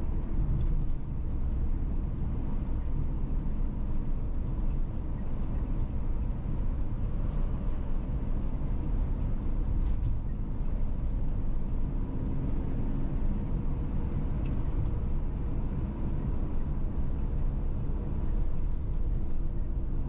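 Steady road and engine noise heard inside a moving car's cabin while driving along at road speed: an even, low-pitched noise of tyres on asphalt and the engine.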